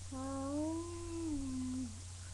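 A girl's voice humming one long note that rises a little and then falls, lasting nearly two seconds.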